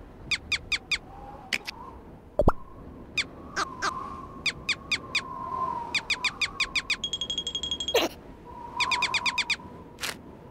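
Cartoon sound effects: quick runs of short high squeaks, four to six in a burst, with a fast falling swoop about two and a half seconds in and a short ringing chime about seven seconds in.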